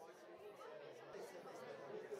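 Faint, indistinct chatter of many guests talking at once in a room, with no single voice standing out.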